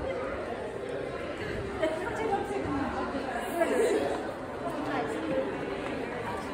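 Indistinct chatter of many shoppers' voices overlapping in a busy department store, with the echo of a large hall.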